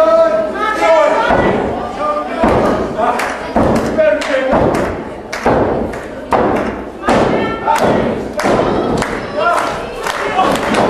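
Repeated heavy thuds of wrestlers hitting the ring mat, roughly one every second or less, with men's voices shouting between them.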